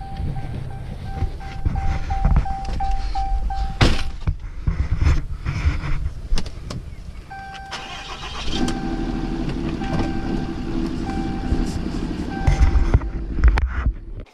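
A Ram 2500 pickup's dashboard warning chime beeps over and over in two runs, over a low rumble with several knocks and thumps. A steady hum joins about halfway through.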